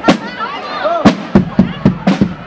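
Drum group playing: sharp, loud drum strokes at an uneven beat, about six in two seconds, over crowd voices.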